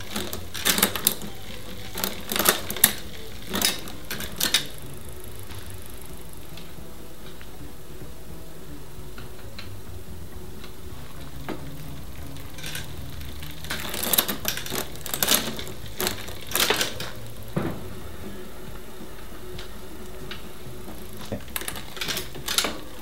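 Bicycle drivetrain in a workstand, clicking and clattering as the cranks are turned and the rear derailleur is shifted while its limit screws are checked. There are two bursts of clicks, one at the start and one about 14 seconds in, with a quiet stretch between them.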